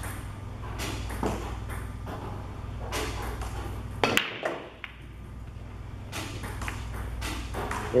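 Pool break: the cue strikes the cue ball, which cracks sharply into the racked balls just after four seconds in. Lighter clicks follow as the balls knock against each other and the cushions while they spread.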